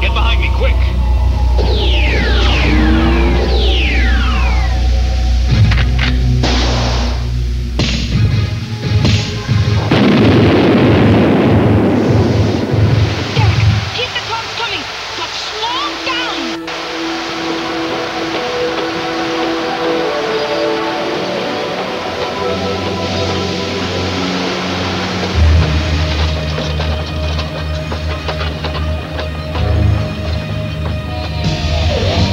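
Cartoon action soundtrack: dramatic background music with sound effects over it. Several quick falling glides come in the first few seconds, then a loud rumbling blast about ten seconds in that lasts a few seconds.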